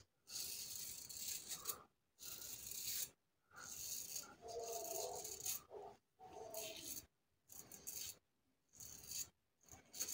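Parker Variant adjustable double-edge safety razor, set to 3 with an Elios stainless blade, scraping through lathered stubble on the face. It comes as a series of short strokes with brief gaps between them.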